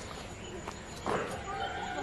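A drawn-out animal call starts suddenly about a second in and is held on a steady pitch, over faint outdoor background.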